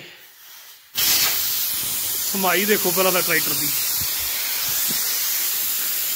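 A loud, steady hiss, like air rushing out, starts suddenly about a second in and holds without change.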